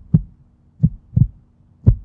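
Heartbeat sound effect: low double thumps, lub-dub, repeating about once a second.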